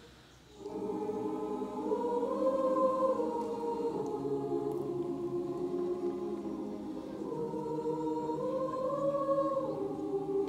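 Large combined high school choir singing the school alma mater in long, held chords. The voices pause briefly at the very start, then sing on with the melody rising and falling.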